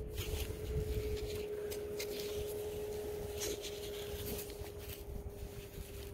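Quiet background of a low rumble and a faint steady hum, with light scratching and rubbing as a thumb handles a small lead token on a cloth.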